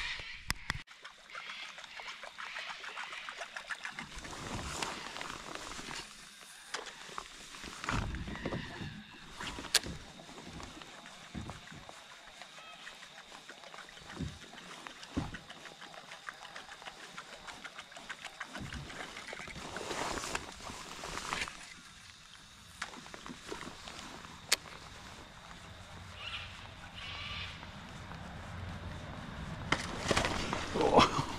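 Handling sounds of lure fishing from a plastic kayak: a fishing reel being wound in, with scattered light clicks and knocks and a few duller thumps on the hull.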